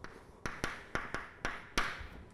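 Chalk writing on a blackboard: a string of about six sharp taps as the chalk strikes the board, with short scratchy strokes between them.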